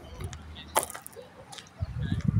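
Faint handling noise from a hand-held camera: a single sharp click a little under a second in, then low rumbling near the end.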